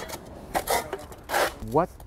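Steel spades digging into a sand bed under a walkway, two gritty scrapes about a second apart. The blades meet concrete buried beneath the sand.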